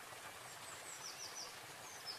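Faint outdoor nature ambience: a soft steady hiss with small bird chirps, including three quick falling chirps about a second in.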